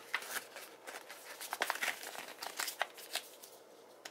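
A folded paper leaflet and cardboard packaging rustling and crinkling in the hands, in a quick, irregular run of small crackles that thins out near the end.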